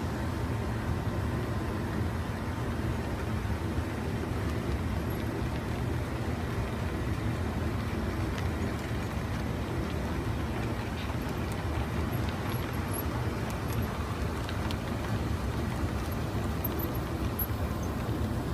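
HO scale model train rolling past along the track: a steady low rumble of wheels on rails and the locomotive motor, with a few faint clicks.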